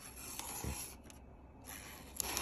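Freshly sharpened folding-knife blade push-cutting a hanging strip of paper towel, a soft papery hiss in the first second and again near the end. The edge is sharp enough to push-cut paper towel.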